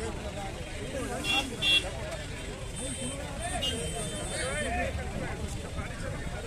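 Crowd of people talking over one another, with two short loud toots of a vehicle horn about a second and a half in, followed by a thin high tone lasting a couple of seconds.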